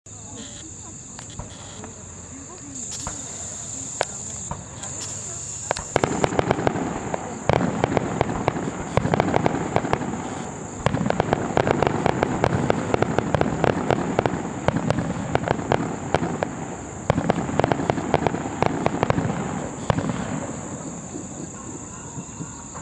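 Aerial fireworks: a few scattered pops, then from about six seconds in a dense, rapid crackle of many small bangs with heavier reports among them, dying away near the end.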